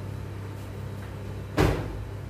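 A single sharp thump about one and a half seconds in, over a steady low hum.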